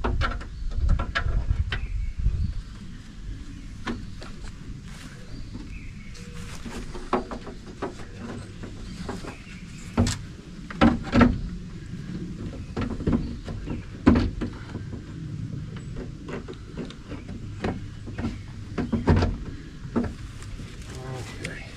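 Irregular clicks, knocks and rattles of hands and hardware working inside a pickup's steel door shell while a side mirror's mounting nuts are fitted by reaching through the door's openings. The knocks come singly and in small clusters, the loudest about halfway through.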